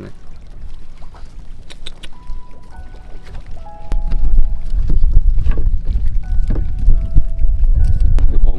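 A boat's engine drones low and steady, growing much louder about four seconds in. Over it runs a faint melody of a few held notes, with scattered light clicks from handling the net.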